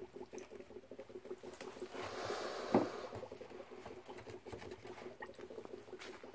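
Faint bubbling of chlorine gas from a rubber tube into phenolphthalein solution in a glass beaker: small irregular pops over a faint steady hum, with one sharp click near the middle.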